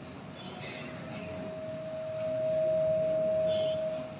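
Public-address feedback: a single steady whistling tone that comes in just after the start and grows louder over about two seconds, then holds, over faint room noise.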